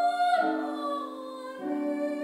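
A young woman singing a solo in a classical style, holding long notes. Under her voice, held accompaniment chords change about twice in the two seconds.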